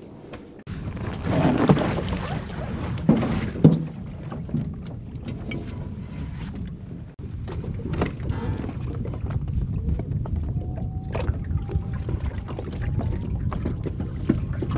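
Small motor boat under way: a steady low motor rumble with wind on the microphone, and a few knocks and handling bumps in the first few seconds.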